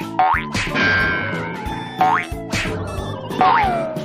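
Children's cartoon background music with cartoon sound effects: quick rising pitch swoops about half a second in and again midway, and a falling swoop near the end.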